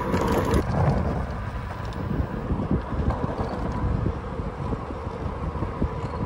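Wind rushing over the microphone of a phone carried on a moving road bicycle, with steady rumble from the tyres on the tarmac. The noise is continuous, with no separate knocks or clicks.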